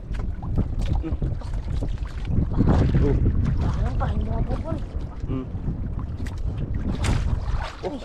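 Wind buffeting the microphone over a choppy sea, a steady low rumble, with water slapping against the hull of a small outrigger boat as a fishing net is hauled in over the side.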